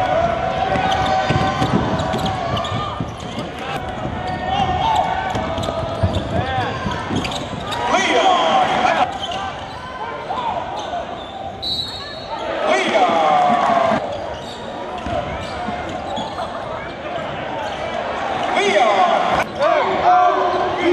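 Live basketball game sound in a large arena: a basketball bouncing on the hardwood court, with indistinct voices of players and spectators echoing in the hall.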